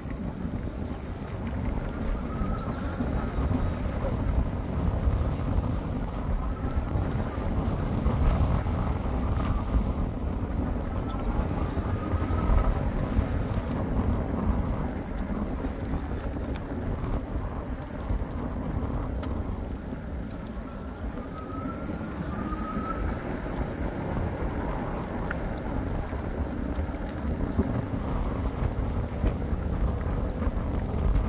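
Wind rushing and buffeting over the microphone with tyre noise on asphalt while riding an e-bike, a steady low rumble that rises and falls in gusts. A few faint, short rising chirps come through now and then.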